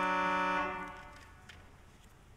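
Pipe organ holding a chord, released just under a second in, the sound then dying away in the reverberant sanctuary.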